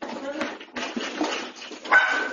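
A pet dog's cries and a person's voice in a room during an earthquake, with a sharp knock just before the end.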